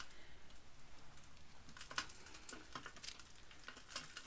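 Faint rustling of a clump of dried dahlia tubers and roots being handled, with a few light clicks from secateurs trimming off a rotten tuber.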